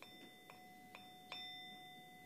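Faint ringing of a small metal meditation bell struck with a short stick: a strike at the start, then lighter strikes about every half second, the clear tone ringing on steadily. It marks the end of a short silent sitting.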